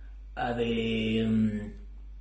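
A man's voice holding one long vowel at a steady, unchanging pitch for about a second and a half, like a drawn-out filler sound between phrases.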